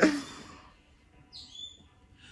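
A cough fading out at the start, then near quiet broken by a faint, brief high-pitched bird chirp about a second and a half in.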